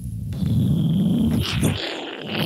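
A man making a low, rough rumbling noise with his voice into a handheld microphone, imitating the rumble of an approaching nuclear blast.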